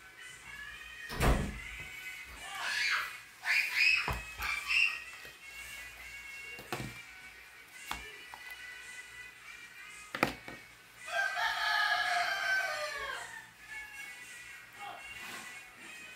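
A rooster crowing: short pitched calls around three to five seconds in, then one long crow from about eleven seconds that falls in pitch at its end. A few sharp knocks come in between, the loudest about a second in.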